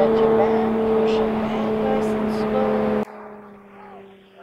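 A steady engine hum at one unchanging pitch, loud, that cuts off abruptly about three seconds in and leaves much quieter outdoor sound.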